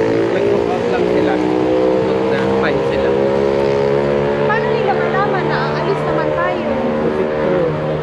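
A motor vehicle's engine idling close by, a steady, unchanging hum with a few faint voices over it.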